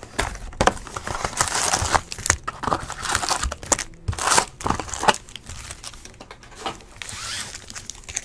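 A 2015 Topps Valor football cardboard hobby box being torn open and its foil-wrapped packs pulled out: irregular rustling, crinkling and tearing with small clicks.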